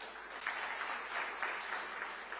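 Audience applause, many hands clapping together, starting abruptly and holding steady.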